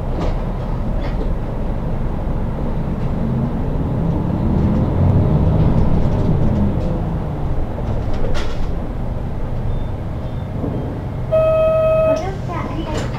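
Inside a city bus under way: steady engine and road rumble, the engine note rising and then falling again midway as the bus pulls along. A short steady tone sounds near the end.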